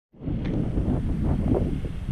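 Wind buffeting the camera's microphone: a steady low rumble that starts abruptly just after the recording begins.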